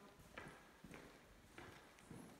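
Faint footsteps on a hardwood floor, about three steps.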